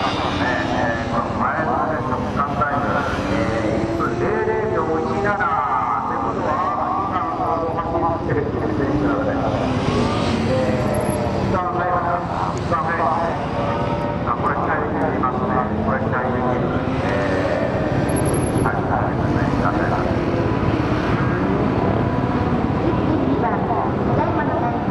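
Suzuki GSX1400's inline-four engine revving up and down over and over, its pitch rising and falling as the bike accelerates out of and slows into tight turns around cones.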